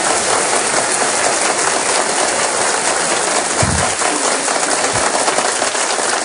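Studio audience applauding, a steady, dense clapping.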